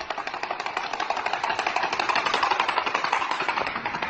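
Horse's hooves clattering fast on an asphalt road, a rapid run of sharp knocks, several a second.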